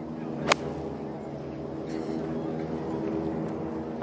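A golf club striking the ball on a full approach shot from the fairway: one sharp, crisp strike about half a second in. A steady hum runs underneath.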